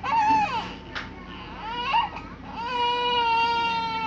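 Six-month-old baby crying: a few short cries, then one long, steady wail over the last second and a half.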